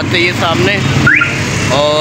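Busy street traffic: engines running under people's voices, with a short, sharp rising tone a little after a second in and a brief steady pitched tone, like a horn, near the end.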